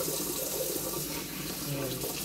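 Kitchen mixer tap running steadily into a stainless-steel sink, the stream of water splashing.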